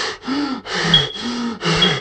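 A voice actress's exasperated, breathy groans and gasps: several drawn-out moans in a row, each falling in pitch.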